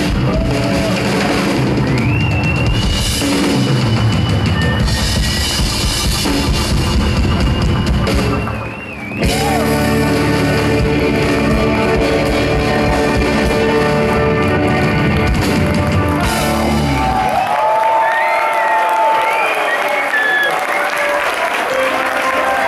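Live rock and roll band with drum kit, electric guitar and keyboards playing loudly, breaking off briefly about nine seconds in before crashing back in. The band stops about seventeen seconds in and the audience cheers and applauds.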